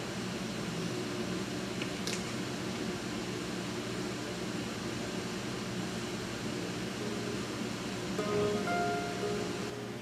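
Steady low room hum, then a little past eight seconds in a few mandolin notes ring out for about a second and a half.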